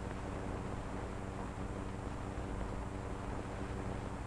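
Steady low hum and hiss of an old optical film soundtrack, with no distinct sound event.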